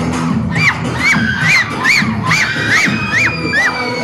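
Children cheering and shouting over loud dance music with a steady beat. About half a second in, a run of short, high rising-and-falling cries starts, two to three a second, ending in one long held high note.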